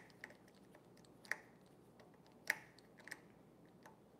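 A handful of small, sharp clicks and taps from hands working on an e-bike's handlebar controls and fittings, the loudest about two and a half seconds in.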